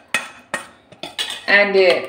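A steel spoon clinking against a stainless steel mixer-grinder jar while scraping out ground masala paste: about four sharp clinks in the first second and a half.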